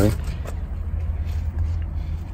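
A steady low rumble in the background, with no distinct events.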